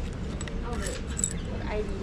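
Small clicks and clinks of camera gimbal and tripod hardware being handled, over faint background voices and a steady street hum.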